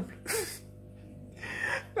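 A man's breathy gasp about a quarter second in, then a second audible breath about a second and a half in.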